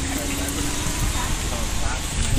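Indistinct voices over steady outdoor noise, with wind rumbling on the phone's microphone.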